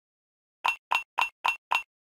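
Five short, pitched pop sound effects in quick succession, about four a second, the kind used for text popping onto the screen in an animated logo.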